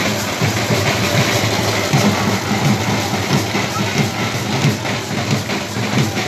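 Loud, steady din of a packed street procession: crowd noise with low drumbeats and music blurred into it.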